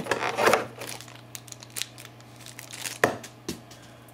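Clear plastic packaging crinkling and crackling as it is handled, loudest in the first second, with scattered small clicks and one sharp click about three seconds in.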